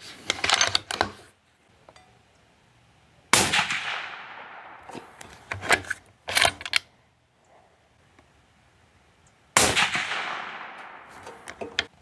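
Two suppressed shots from a Mossberg Patriot .308 bolt-action rifle fitted with a Silencer Central Banish 30, about six seconds apart, each a sharp crack with a long fading tail. Metallic clicks of the bolt being worked come before each shot.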